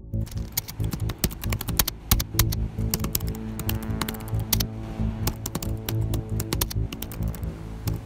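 Rapid, irregular computer-keyboard typing clicks, thinning out near the end, over background music with sustained low tones.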